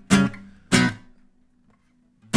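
Dowina Hybrid nylon-string guitar (solid Dolomite spruce top, granadillo back and sides): two loud strummed chords about three-quarters of a second apart, the second left to ring on and fade.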